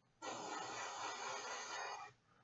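Airbrush spraying a quick pass of thin red glaze paint: a steady hiss that starts just after the beginning and cuts off at the end, when the trigger is released.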